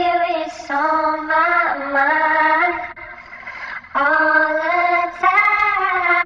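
A sung vocal loop played back through the UADx Waterfall Rotary Speaker, a Leslie-style rotary speaker plugin. It comes in two sung phrases with a short break about three seconds in.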